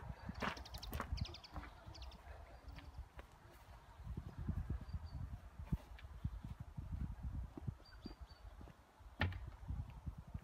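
Footsteps on a garden lawn and handling bumps from a phone carried on a selfie stick, heard through the phone's own microphone as an irregular run of low thumps. There is a sharper knock near the end and faint bird chirps.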